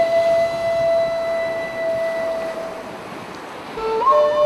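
Background flute music: one long held note that fades away about three seconds in, then a new phrase begins near the end.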